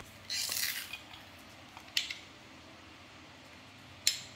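Handheld garlic press crushing a garlic clove: a brief scrape, then a single sharp click about two seconds in.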